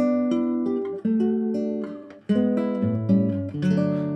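Nylon-string classical guitar plucked with the bare fingertips instead of nails, playing a slow phrase of ringing notes, with lower bass notes coming in about three seconds in. The notes are played firmly and are perfectly loud, showing that fingertip playing loses little volume.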